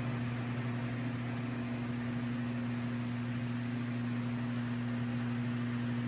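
Steady, even hum of a walk-in flower cooler's refrigeration unit: a low constant drone with a hiss of air from its fans.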